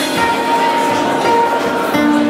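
Rock band playing live: guitars holding long sustained notes over the drums, with a cymbal crash ringing out at the start.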